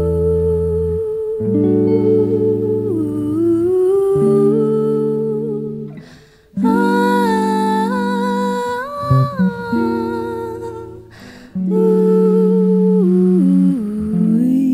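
A woman hums a wordless melody into a microphone over jazz guitar chords, which change every second or two.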